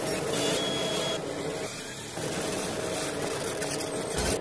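Glitchy logo-intro sound effect: a steady hiss of static over a constant low hum, which thins out briefly about halfway, with crackling near the end.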